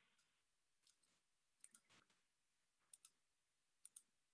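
Faint computer clicks in quick pairs, three times, against near silence: a video-call participant clicking buttons to get her microphone working.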